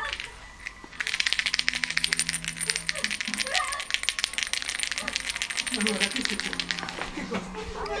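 A rattle shaken fast and continuously from about a second in: a dense, even run of quick clicks.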